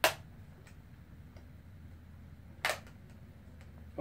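Two sharp clicks or knocks about two and a half seconds apart, with faint ticks between, as a Panasonic Toughbook CF-53 laptop is handled and turned over in the hands.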